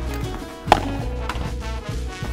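Background music with a sharp pock of a padel racket striking the ball about two thirds of a second in, and a fainter knock about half a second later.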